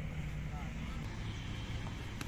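Outdoor ambience: a low steady rumble with faint, distant voices.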